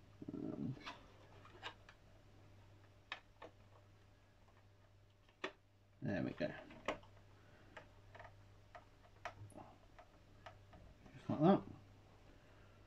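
Scattered small clicks and ticks from a precision screwdriver and hard plastic model parts being handled and screwed together, with brief mumbled voice sounds about six seconds in and near the end.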